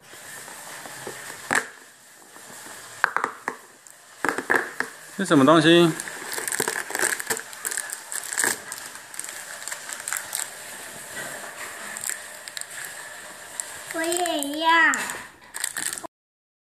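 A cardboard LEGO advent calendar door being poked open and a small clear plastic parts bag crinkling as it is pulled out and handled, with irregular clicks and rustles. A child's voice gives a short wavering exclamation about five seconds in and again near the end.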